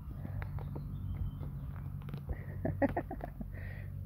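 Faint scattered clicks and scratches of a kitten chewing and tugging a feather toy against the fabric of a soft pet carrier, over a steady low hum. A brief voice sound comes about three seconds in.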